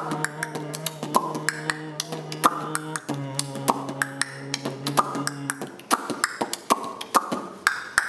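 Beatboxing and body percussion: a steady hummed bass note under a fast run of sharp clicks and slaps. The hum stops for good a couple of seconds before the end, leaving only the percussive hits.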